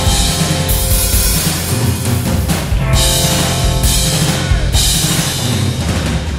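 Live rock band playing loudly: electric guitars, electric bass and a drum kit, with cymbals crashing again and again.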